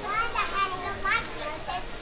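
Young child's voice and laughter: a few short, high-pitched calls and exclamations.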